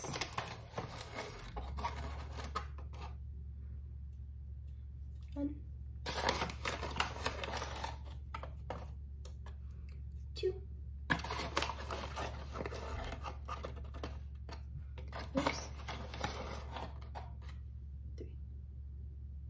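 Coffee scoop scraping and tapping as ground coffee is spooned into a coffee maker's brew basket, in bursts of clicking and scraping separated by short pauses. A low steady hum comes in about a second and a half in.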